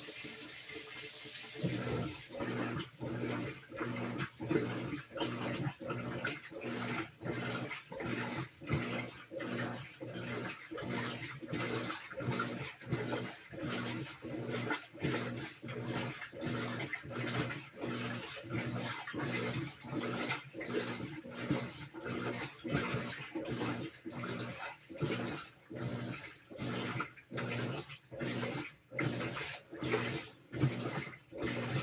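Whirlpool WTW4816 top-load washer in its rinse stage: a water-fill hiss gives way, about two seconds in, to the drive motor agitating the load back and forth in an even rhythm of about one and a half strokes a second, each stroke a short motor hum with water sloshing.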